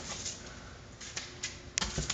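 Several light, sharp clicks and taps at irregular intervals in the second half, over a faint steady hum.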